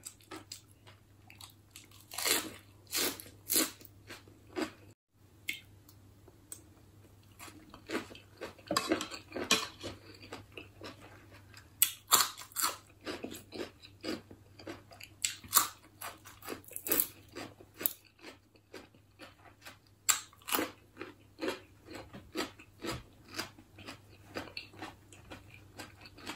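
A person chewing a crisp lettuce-leaf wrap of spicy snail salad close to the microphone. Crunching comes in irregular clusters, with short lulls about five seconds in and again around eighteen seconds.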